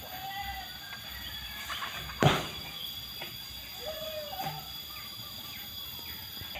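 A single sharp knock about two seconds in, over a steady high-pitched drone, with two short faint animal calls, one near the start and one about four seconds in.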